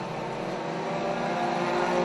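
A pack of four-cylinder mini stock race cars running at speed on a dirt oval, several engine notes droning together and getting louder as they come closer.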